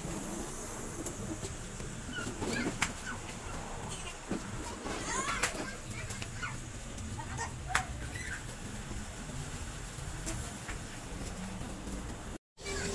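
Outdoor background noise with faint voices and a few short, high chirps scattered through it.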